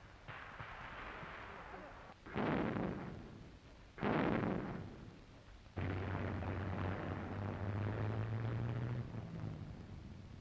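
Battle sound: two heavy explosive blasts about a second and a half apart, each dying away over about a second, then, from about six seconds in, a long steady rumble with a low hum that eases off near the end.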